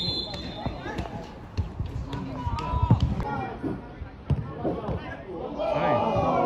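Football being kicked on a grass pitch: several sharp thuds, the loudest about three seconds in, with players shouting to each other between kicks and a burst of calls near the end.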